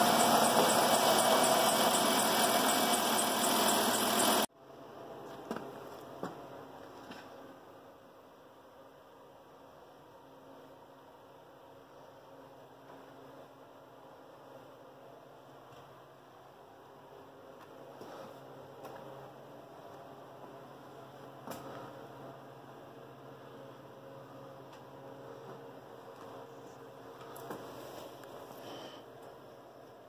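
Grand Caravan minivan engine running with the hood open and the AC switched on for the defrost, a steady mechanical noise. It cuts off abruptly about four and a half seconds in, leaving faint rustling and a few light knocks from handling things in the cabin.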